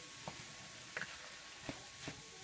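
Wooden spoon stirring cooked rice through a ground-chicken mixture in a frying pan, with three light knocks of the spoon against the pan, under a second apart.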